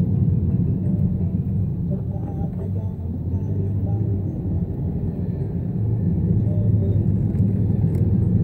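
Low, steady rumble of a car driving slowly, heard from inside the cabin. It eases off slightly about three seconds in and builds again toward the end.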